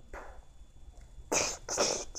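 A child's voice making two short, breathy, hissing bursts about half a second apart in the second half, after a faint breath shortly after the start.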